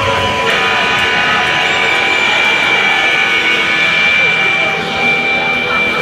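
Electric guitar amplifiers left ringing on stage, holding a steady high tone, with voices talking over them between songs.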